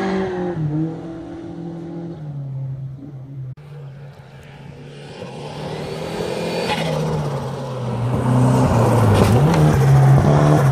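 Rally car engines on a gravel stage. One car's engine fades away in the first seconds. Then another approaches and grows steadily louder, sliding past near the end with gravel crunching under its tyres.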